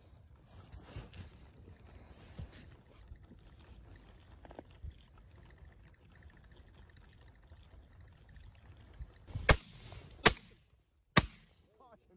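Three shotgun shots near the end, each sharp and loud, a little under a second apart. Before them, only faint low rustling.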